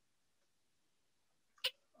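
Near silence, broken once about one and a half seconds in by a single short click.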